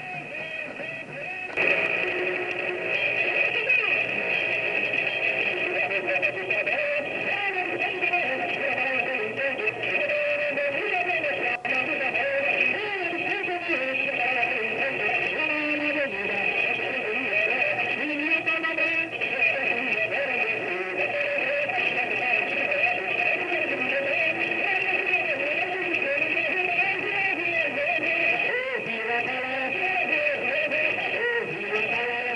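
Live band music with voices singing over it, continuous and loud; it steps up in loudness about a second and a half in.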